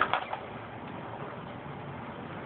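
Axial SCX10 radio-controlled crawler clattering against a wooden ramp: a quick run of three or four knocks in the first half second, then only a steady faint hiss.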